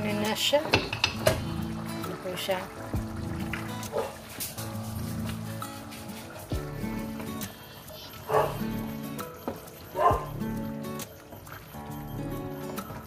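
Background music with held chords, a voice-like part near the end. Beneath it, a wooden spoon stirs thick, simmering Bolognese sauce in a frying pan.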